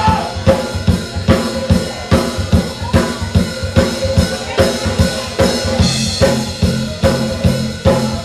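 Live band playing an instrumental passage: a drum kit keeps a steady beat on bass drum and snare under acoustic guitar and electric bass guitar, with the bass notes more prominent from about six seconds in.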